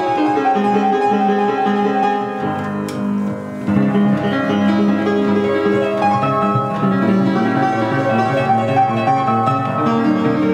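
Foot-pumped pianola playing a paper music roll: piano music with many notes, briefly softer about three seconds in. Its automatic sustain is not connected.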